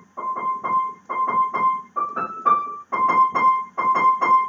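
Piano music: short, quickly fading high notes, about four a second, mostly repeating one pitch with a few notes a step higher.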